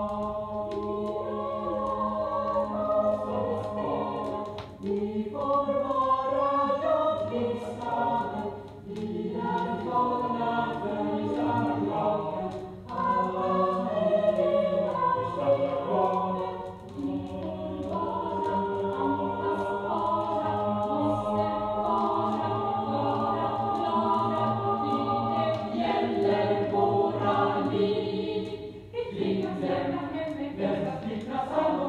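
A student choir singing in several voice parts, in phrases of a few seconds with short breaks between them.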